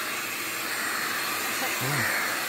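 Deerma handheld stick vacuum cleaner running steadily, its floor nozzle sweeping over tile and sucking up dirt.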